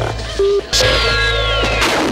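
TV show sound effects: a short beep, then a sudden blast with a whistle falling in pitch for about a second, and a second hit near the end, the self-destruct of a taped message.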